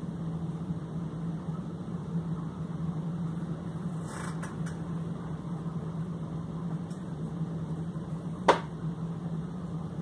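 Steady low mechanical hum of a fan-like appliance in a small room. A short rustle comes about four seconds in, and a single sharp knock about eight and a half seconds in.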